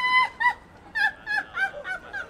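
A woman's high-pitched laughter: one held note at the start, then a string of short bursts.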